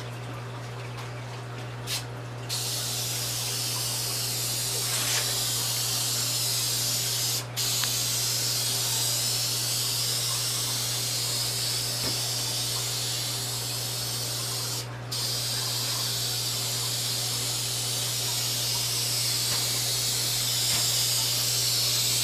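Aerosol spray can of clear coat hissing, first a short burst about two seconds in, then long continuous passes broken twice by brief stops as the nozzle is released. A steady low hum runs underneath.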